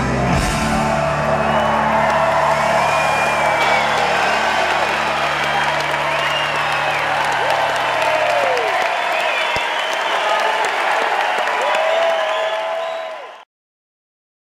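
A rock band's final chord ringing out over a crowd cheering, whistling and applauding. The held low notes stop about two thirds of the way in, leaving the cheering, which fades and then cuts off shortly before the end.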